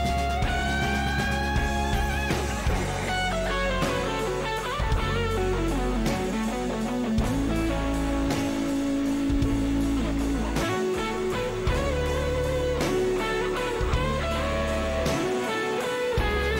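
Electric guitar solo with long held notes that bend upward and a run that slides down, over the live band's bass and drums.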